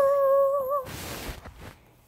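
A Hahn's macaw's voice: one sung note that swoops up and is held steady for most of a second, then a brief rustling noise.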